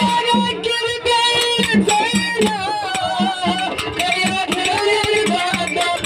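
Kannada dollina pada folk music played live: a man singing over long held instrumental notes and a steady low drum beat of about two to three strokes a second.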